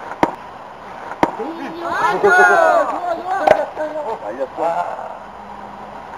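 Sharp pops of a baseball smacking into a leather glove, two about a second apart near the start and another a little past the middle, then players shouting and calling out on the field.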